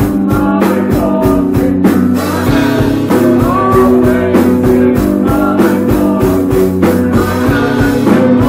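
Three-piece rock band playing live and loud: electric guitar, electric bass and drum kit, with drum and cymbal hits throughout.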